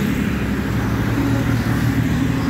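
Highway traffic: a steady low engine drone with tyre noise from passing cars and trucks, growing a little louder in the second half.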